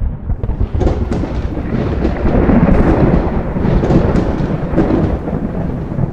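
Deep thunder-like rumble with scattered crackles, a sound effect for a logo emerging from fiery smoke clouds. It starts abruptly and swells to its loudest in the middle.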